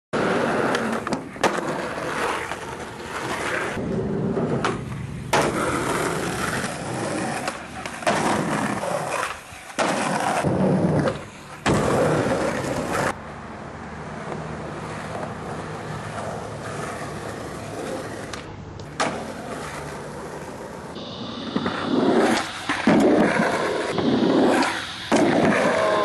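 Skateboard wheels rolling on pavement, a loud rough rumble that starts and stops abruptly several times, with occasional knocks of the board.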